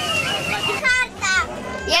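Children's high voices calling out, two short shouts about a second in and another near the end, over the busy noise of a funfair with a repeating falling tone.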